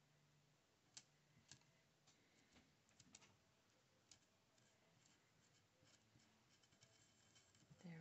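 Near silence with a few faint ticks and scratches from a marker tip being worked over a small button.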